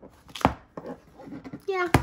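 Sharp knocks and taps of a plastic sticker album being handled and laid down on a desk as its elastic band is pulled off: one loud knock about half a second in, a few lighter taps after it, and a sharp click at the very end.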